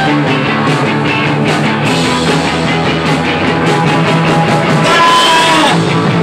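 Live garage rock band playing loudly: distorted electric guitar and driving drums, with gliding pitched notes near the end.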